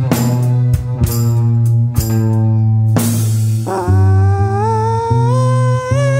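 A rock band playing a slow song: long held lead guitar notes that slide upward in pitch, over a steady bass and drum hits.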